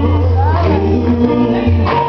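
Live gospel song: a woman's voice holding and bending sung notes over a band accompaniment with sustained low bass notes.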